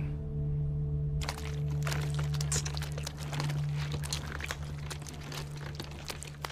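Bare feet treading red grapes in a wine vat, a dense wet crunching and squelching that starts about a second in, over a low sustained music drone.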